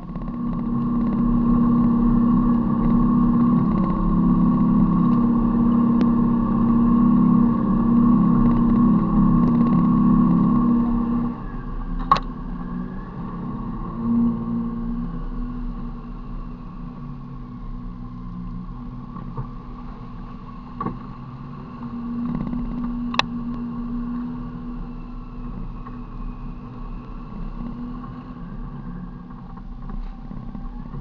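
Four-wheel drive's engine running under load on a dirt track, a steady drone that eases and drops in level about a third of the way through. A few sharp knocks come later, one of them well after the others.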